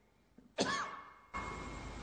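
A single cough about half a second in, sharp at first and fading out over most of a second, in an otherwise near-silent pause.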